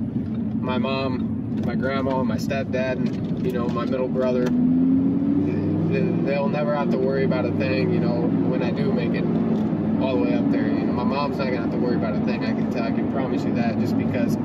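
Car engine and road noise heard from inside the moving car's cabin, a steady low hum under talk, with the engine note rising for about a second a little over four seconds in.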